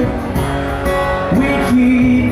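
Live acoustic pop song: a steel-string acoustic guitar strumming with a man singing. Near the end a sung note slides up and is held.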